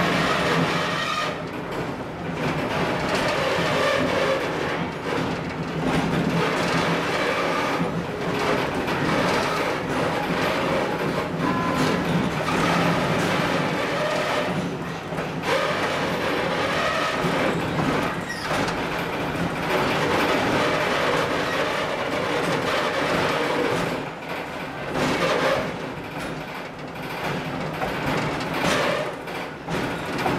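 A train in motion: the Baldwin RS-4-TC diesel locomotive running steadily, with the wheels rolling over the rails.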